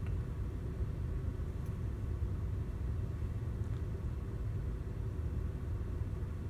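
Low, steady rumble of a VW Jetta Mk6 idling, heard from inside the car's cabin.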